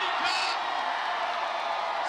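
Large crowd cheering and whooping, many voices at once, as a mass run is flagged off.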